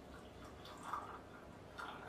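Hot water poured in a thin stream from a stainless steel gooseneck kettle into a glass pitcher, faintly trickling and splashing, with louder splashes about a second in and near the end. The pour warms the pitcher before brewing.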